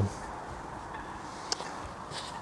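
Quiet outdoor background noise, with one light click about one and a half seconds in.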